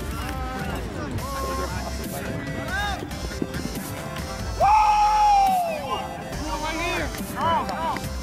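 Background music with a steady beat and a singing voice, with one long held vocal note about halfway through that falls away at its end.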